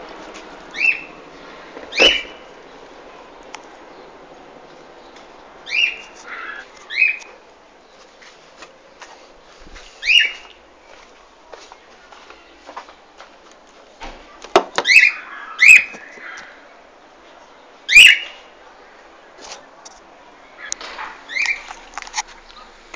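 A bird calling: short, high chirps that slide downward, repeated at irregular intervals of one to four seconds, a few in quick pairs.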